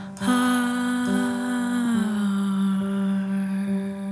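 A woman's wordless vocal holding one long note that steps down in pitch about two seconds in, over a steady sustained low accompaniment, in a slow neo-soul song.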